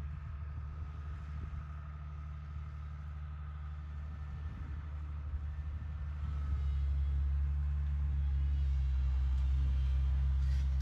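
Komatsu PC200 hydraulic excavator's diesel engine running with a steady low drone as the machine swings, with a faint high whine in the first half. The engine grows louder about six and a half seconds in and holds there.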